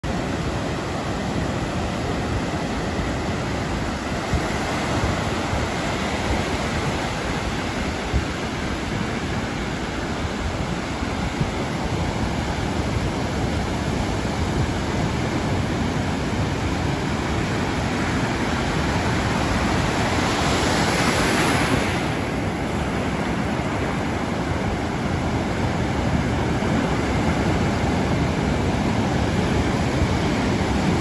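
Ocean surf breaking and washing up the sand in a steady rush, with one louder, hissier wash about twenty seconds in.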